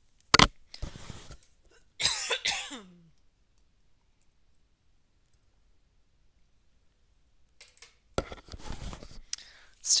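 A woman coughing, the lingering tail end of a cough: a sharp cough about half a second in, then a longer, voiced cough around two seconds in. A short noisy sound follows near the end.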